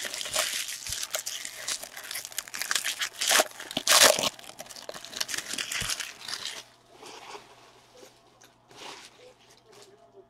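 Foil wrapper of a trading-card pack being torn open and crinkled in the hands: a dense crackling, loudest about four seconds in. After about seven seconds it dies down to faint handling sounds.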